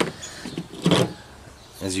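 A gloved hand picking up a steel adjustable wrench from a table, with a short handling bump about a second in, over quiet outdoor background; speech begins near the end.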